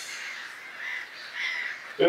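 Wild birds calling outside: a run of short, harsh calls repeated about every half second.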